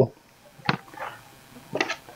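A few faint clicks and light knocks from hands handling seedlings and small plastic containers, with one sharp click about two-thirds of a second in.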